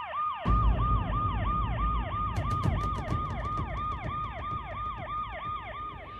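Police siren sounding in a fast yelp, about three quick rises and falls in pitch each second, over a low rumble that comes in about half a second in.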